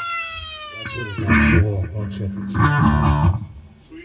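Live rock band on a small stage: a long pitched note slides downward over the first second, then bass and drums hit in two short bursts.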